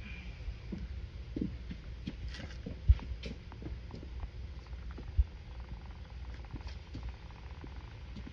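Water running down a reconnected kitchen sink drain pipe, with faint scattered taps and rattles like small rocks rolling along inside the pipe. Two dull thumps stand out, one about three seconds in and one about five seconds in.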